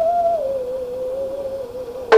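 Bowed musical saw holding one pure, singing note that slides slowly down in pitch and fades a little toward the end.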